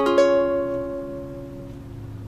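A D-flat major chord strummed once on a ukulele, ringing out and slowly fading.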